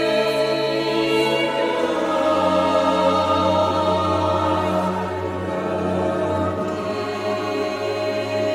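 A choir singing slow, long-held chords in a sacred oratorio, the bass moving down to a lower note about two seconds in.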